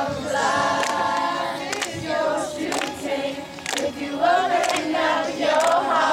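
A large group of girls singing together unaccompanied, holding and sliding between notes in harmony, with sharp hand claps about once a second.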